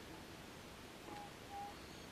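Faint outdoor background in which a bird gives two short, level whistled notes of the same pitch, a little past a second in and again half a second later.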